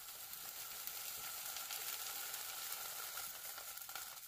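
Leftover water droplets sizzling off a hot cast-iron skillet over medium heat, drying the pan after washing: a steady hiss with fine crackling.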